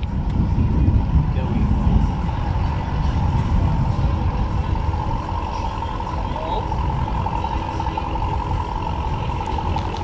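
Low rumble of a running motor vehicle, with a steady high whine throughout.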